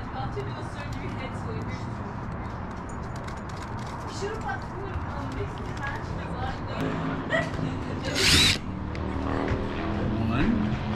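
A motor vehicle's engine running steadily, with a brief loud hiss about eight seconds in.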